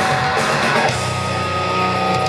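Folk metal band playing live, with distorted electric guitars and hurdy-gurdy. A steady high note is held from about a second in.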